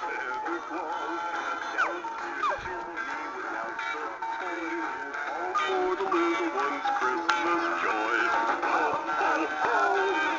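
Animated dancing Santa figures playing a Christmas song, with recorded singing over a music backing.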